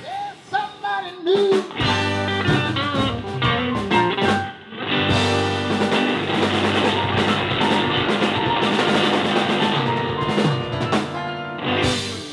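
A live blues band playing: electric guitar with bent notes over bass, drum kit and keyboard. It opens choppy, settles into a dense, steady full-band groove from about two seconds in, and eases off near the end.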